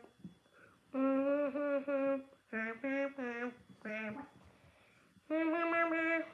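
A child humming a tune without words, in short phrases of held notes, with a pause of about a second before the last phrase starts. The humming stands in for the game's background music.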